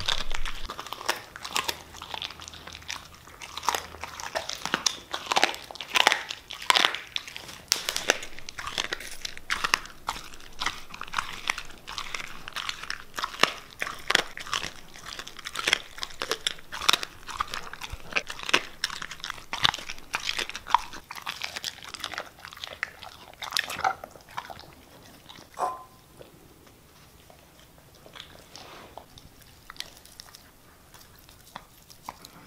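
Siberian husky chewing raw chicken, bones crunching between its teeth in quick, irregular bites. The crunching thins out and gets quieter for the last several seconds.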